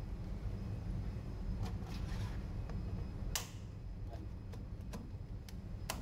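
A few short clicks and scrapes of a screwdriver and hands working at the wired terminals of a fire detection isolator cabinet, the sharpest click about three and a half seconds in, over a steady low hum.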